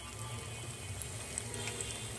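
Gram-flour-battered eggplant slices deep-frying in hot oil: a steady sizzle with small scattered crackles, under faint background music.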